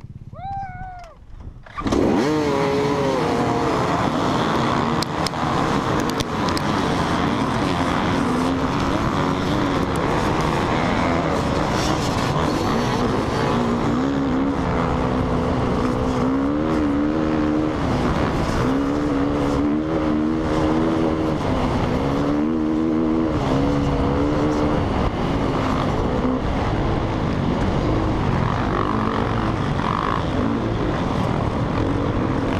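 Dirt bike engines start together about two seconds in, and the massed field runs at full throttle. From the onboard bike, its own engine's pitch rises and falls again and again as it accelerates through the gears over rough desert ground.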